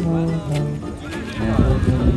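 A small acoustic street band playing traditional jazz, with a tuba holding low bass notes under a banjo and other instruments. From about a second and a half in, a loud low rumble joins in with some wavering higher tones.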